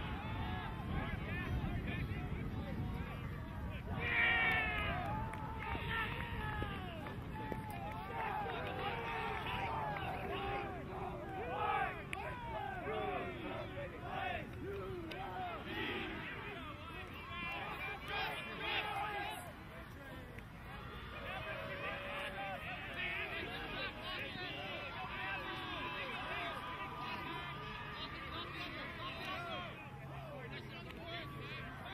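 Many overlapping voices shouting and calling out across an open field from players and the sideline crowd, indistinct and at a distance, with a louder shout about four seconds in.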